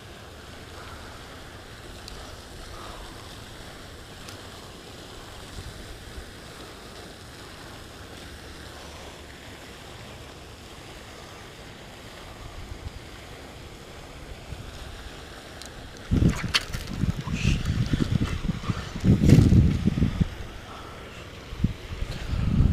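Faint steady outdoor background, then, starting about three quarters of the way in, wind buffeting the camera microphone in uneven gusts of low rumbling, with a few sharp knocks.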